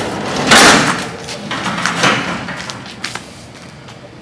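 An old tilt-up garage door being pulled open by hand, with a loud noisy burst about half a second in and another near two seconds in, then dying away as the door swings up.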